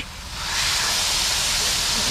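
Diced chicken thighs sizzling on a hot Blackstone steel griddle as they are spread out with a flat griddle spatula; the sizzle swells in over the first half second and then holds steady.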